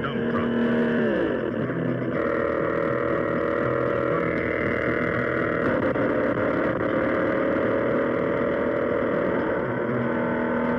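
Mattel Baroom Skiploader toy's battery-powered engine roar: a steady droning roar that drops in pitch about a second in and shifts again twice as the loader works. It is the toy's sound, which gets louder the harder it works.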